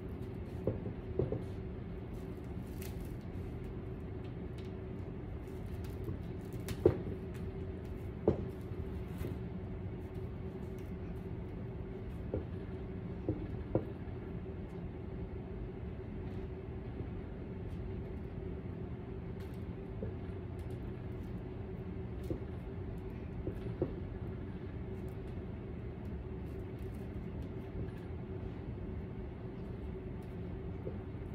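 A steady low hum throughout, with a few short, faint taps and crinkles as drape tape is pressed onto a plastic-wrapped dress form.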